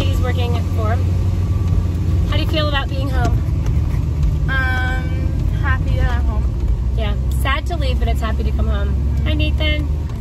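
Steady low wind and road rumble of a convertible driving with its top down, with voices talking over it and one drawn-out vocal sound about halfway through.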